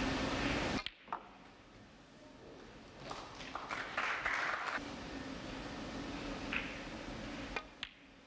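Snooker balls clicking: a sharp click of cue tip on cue ball just under a second in, then a few lighter ball-on-ball clicks, with two more near the end, over a quiet arena hush.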